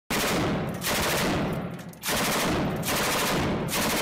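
Rapid automatic gunfire in four bursts of a little under a second each, one after another with short breaks between them.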